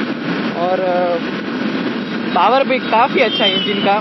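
A motorcycle being ridden: wind rushing over the microphone and the Yamaha FZ V3's single-cylinder engine running steadily, under the rider's voice. The voice holds a drawn-out "uh" about half a second in and speaks again from a little past the halfway point.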